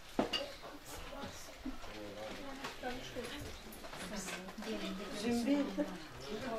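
Indistinct chatter of several people in a room, with a single sharp clink of tableware just after the start.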